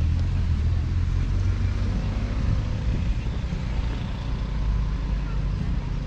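Road traffic: a steady low rumble of passing vehicles.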